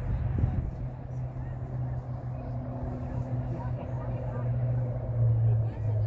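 Distant, indistinct voices of players and spectators on a soccer field over a steady low hum, which grows louder about five seconds in.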